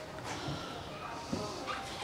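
Small dog whimpering faintly, with two short faint sounds in the second half.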